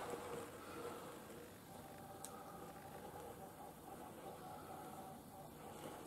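Quiet room tone with a faint steady hum and a single faint click about two seconds in.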